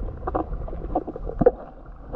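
Underwater sound picked up by a submerged action camera: a series of short, irregular pops and knocks over a low, steady rumble, the loudest knock about one and a half seconds in.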